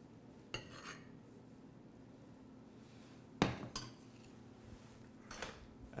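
A metal spoon clinking faintly against a stainless-steel saucepan a few times as warm marinara sauce is spooned out onto a plate.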